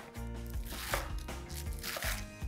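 Chef's knife chopping spring onion greens on a wooden cutting board: a few sharp knife strikes against the board. Steady background music runs underneath.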